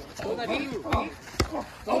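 Sparring with boxing gloves: one sharp smack of a gloved punch landing about one and a half seconds in.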